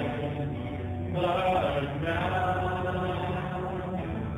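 Live worship song: sustained singing over a steady electric keyboard accompaniment, with a brief lull in the voice about half a second in before the next sung phrase.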